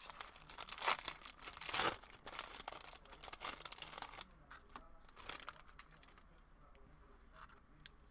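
A trading-card booster pack's foil wrapper crinkling and tearing open, with two louder rips in the first two seconds. After about four seconds it dies down to faint rustles and small clicks.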